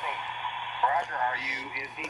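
Shortwave receiver audio from a speaker: steady static hiss over a low hum, with a brief faint voice about a second in.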